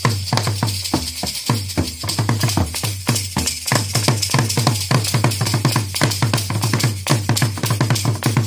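Rwandan ingoma drums beaten with sticks in a fast, dense rhythm, with a steady jingle over it from the dancer's leg bells.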